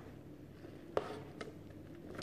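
Mostly quiet, with a few light taps: one sharp tap about a second in and a smaller one just after. These come from plastic kitchen utensils being dabbed and handled over paint-covered paper.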